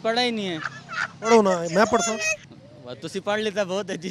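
A man laughing in three bursts, each about a second long.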